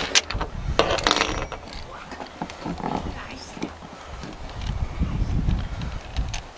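Clicks and small metallic clatters of a recoil starter being taken apart by hand: the pulley, cap and pawl parts handled and set down, with the sharpest clicks in the first second.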